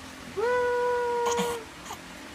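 A baby's single long, high-pitched vocal 'aaah', rising briefly at the start and then held at a steady pitch for about a second.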